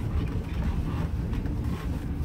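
Steady low rumble of a 2000 Ford E-250 van's 5.4 Triton V8 and its tyres, heard from inside the cabin as the van drives off slowly.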